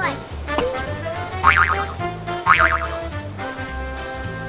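Background music with a steady repeating bass line, with a short falling pitched sound just after the start and two brief warbling pitched sounds about a second apart in the middle.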